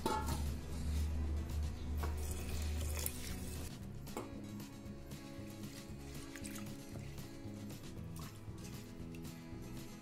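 Soft background music over faint sloshing of hands moving soaked basmati rice in water in a pressure-cooker pot. A low hum stops a little under four seconds in.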